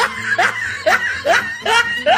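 Snickering laughter: a run of short rising bursts, about two a second.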